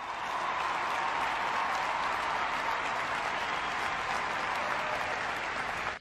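Crowd applauding, a steady dense clatter of clapping that fades in at the start and cuts off suddenly near the end.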